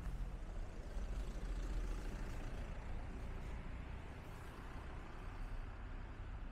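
Street traffic: a motor vehicle passing out of sight, its engine and tyre noise loudest about one to two seconds in and then slowly fading, over a low rumble.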